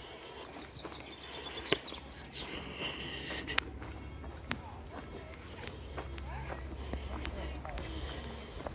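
Footsteps on a gravel path, with a few sharp clicks, the loudest nearly two seconds in.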